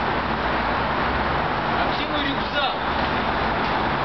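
Steady urban background noise: a constant low rumble like road traffic, with indistinct voices talking over it.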